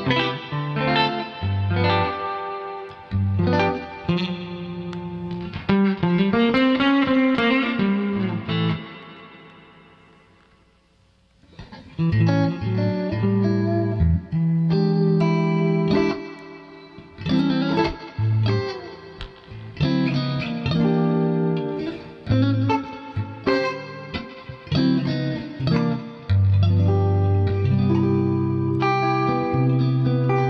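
Stratocaster-style electric guitar played through an amplifier: picked single-note lines and chords, with a long bent note and vibrato a third of the way in that fades almost to silence before the playing starts again.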